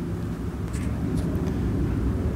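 Steady low background rumble with no speech, and a faint brief hiss around the middle.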